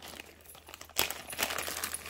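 Small metal jewelry being handled on a tabletop: a sharp clack about a second in, then light clinking and rustling.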